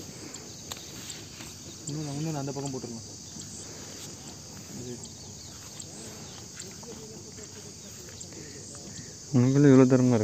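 Steady insect chorus, typical of crickets, chirring high and continuous throughout. A man's drawn-out vocal sound comes briefly about two seconds in, and again louder near the end.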